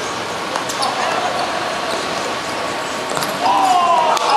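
Football kicked on a hard outdoor pitch, a few sharp thuds over a steady hiss of background noise. Near the end, players start shouting as the shot goes in for a goal.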